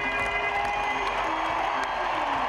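Arena crowd cheering over music playing on the public-address system, at a steady loud level with a few held tones on top.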